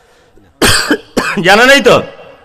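A man coughing into a microphone, twice: a short cough about half a second in, then a longer, voiced one near the end.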